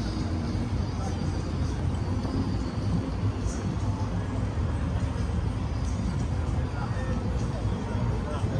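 Outdoor city ambience: a steady low rumble with faint voices of people nearby.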